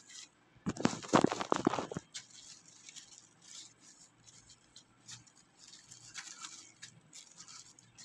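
Plastic food-prep glove crinkling and rubbing over raw seasoned fish as a hand mixes spices into it, with a loud stretch of rapid scratchy rubbing about a second in, then fainter rubbing.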